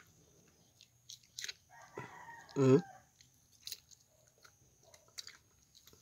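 A man chewing a mouthful, with soft scattered mouth clicks, and a short closed-mouth "hmm" about two and a half seconds in.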